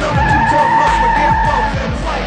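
Car tyres squealing in one steady high screech for about a second and a half, over hip-hop music with deep bass drops.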